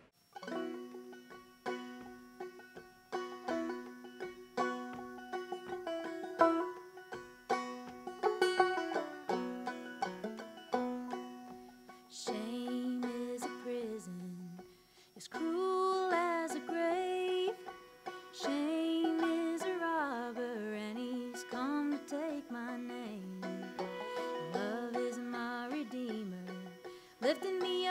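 Old-time string duet on banjo and fiddle. Quick banjo picking carries the first twelve seconds or so, then a bowed fiddle melody, joined by a singing voice, comes in over the banjo.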